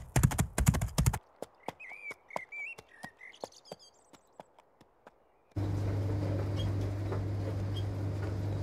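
Quick, loud hoofbeats of a galloping horse break off about a second in. A few fainter hoof clops and birds chirping follow. About five and a half seconds in, a steady low mechanical hum of washing machines running begins.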